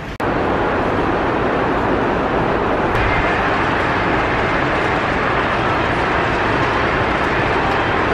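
Heavy rain pouring down on a large store's roof, heard from inside as a steady, even hiss that comes in suddenly just after the start.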